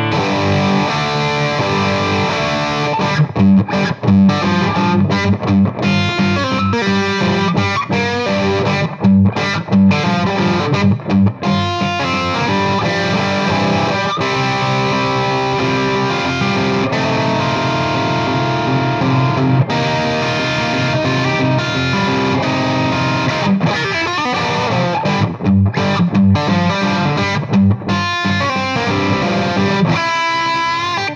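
Gibson Custom Shop Standard Historic 1959 Les Paul electric guitar played on its bridge humbucker through an overdriven amp, with a distorted tone. It plays a continuous rock passage of chords and single-note lines.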